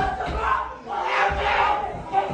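Several people yelling and screaming in distress, loudest about halfway through.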